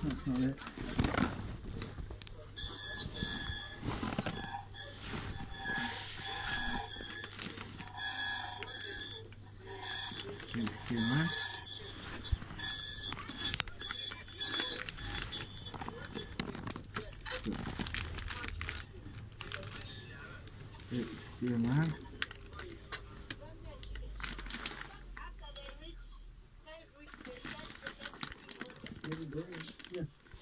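An electronic alarm-like tone, several high pitches sounding together, from about two seconds in until about halfway through, over muffled rustling.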